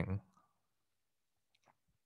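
A man's spoken word trails off, then near silence with a few faint clicks in the second half.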